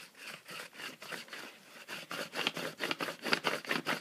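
Black crayon in its holder rubbed back and forth across a sheet of paper laid over a design plate: quick, scratchy strokes, several a second, growing louder about halfway through.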